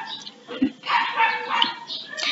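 A dog barking several times in a row, short sharp barks a little under a second apart.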